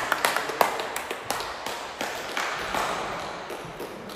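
A few people clapping by hand, the claps uneven and thinning out as they fade over the four seconds.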